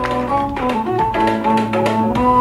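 Instrumental music: a melody of short held notes over a low bass line, with light taps.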